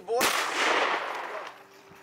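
A retrieving dog plunging into an icy river: one loud splash that starts suddenly and washes out over about a second.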